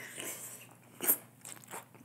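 A person chewing a mouthful of Chinese takeout food close to the microphone, with a few separate crunches of the food between the teeth; the loudest crunch comes about a second in.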